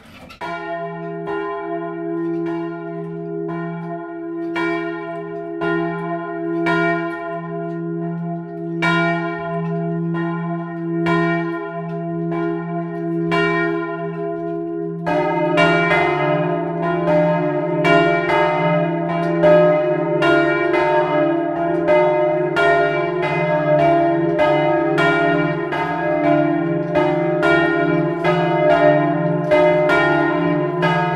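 Bronze church bells cast by Luigi Magni, from a three-bell set in E-flat major, swung full circle by ropes and ringing. At first one bell strikes at an even pace, about three strokes every two seconds. About halfway through another bell joins, and the peal becomes louder and denser.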